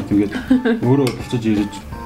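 Knife and fork clinking and scraping on ceramic plates while cutting salmon steak, with a sharp clink about a second in.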